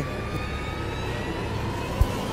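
Steady low hum and hiss through the stage sound system, with a few faint steady tones. A short click comes at the very end.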